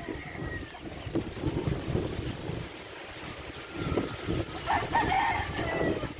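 A rooster crows faintly near the end, over wind rumbling on the microphone.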